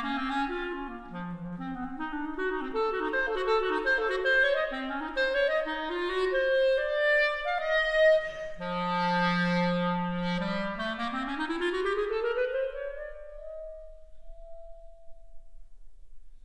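Solo clarinet playing an unaccompanied concerto cadenza: quick runs of notes, then a long low note about halfway through, then a rising run to a high note that is held and fades near the end.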